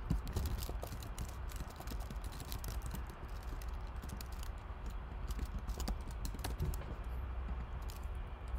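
Typing on a computer keyboard: an irregular run of quick key clicks as a short line of text is entered.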